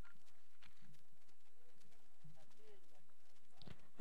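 Faint background voices of people talking at a distance, with a few light clicks, in a lull between loud public-address announcements.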